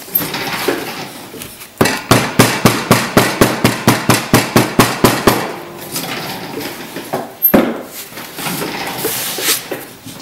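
Hammer tapping down Delft casting clay packed into a metal mould frame: a quick run of blows, about five a second, for some three and a half seconds starting about two seconds in, then one more single blow later on.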